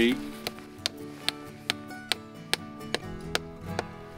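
A hammer tapping a stainless steel spile into a maple tree's tap hole: about ten sharp, light strikes a little under half a second apart. Soft background music plays under it.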